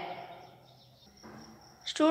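A woman's voice trails off in the first half-second, leaving quiet room noise with nothing distinct in it; a small click comes just before she speaks again.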